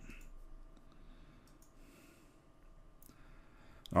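A few faint computer mouse clicks, spaced irregularly, over quiet room noise.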